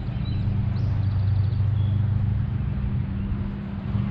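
Steady low hum of a boat motor running, with a few faint bird chirps.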